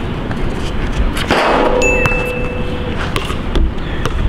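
A metallic clang about a second in, followed by a ringing tone that holds for over a second and then cuts off, over a steady background hiss.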